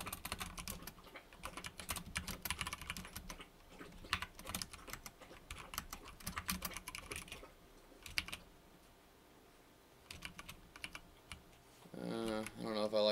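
Typing on a computer keyboard: quick runs of key clicks with short gaps, and a pause of about two seconds near the end before a few more keystrokes.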